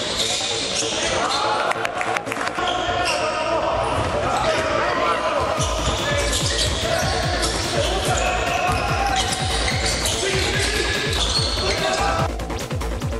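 Live basketball game sound in an echoing sports hall: spectators' voices and shouts over the thuds of the ball bouncing on the court, with sharp knocks about two seconds in. From about halfway, low thuds come several times a second.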